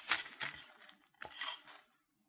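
Table knife cutting through the crisp deep-fried batter crust of a burrito: short crunching cracks and blade scrapes in two brief bursts, the second a little over a second in.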